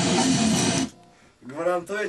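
A burst of loud, dense music, rich in guitar-like strummed sound, that cuts off suddenly just before a second in. After a brief gap a man starts speaking.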